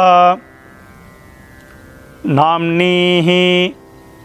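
A man chanting a Sanskrit Vedic mantra of the tharpanam rite in long, steady-pitched syllables. One held note ends just after the start, and another comes about two seconds in and lasts about a second and a half.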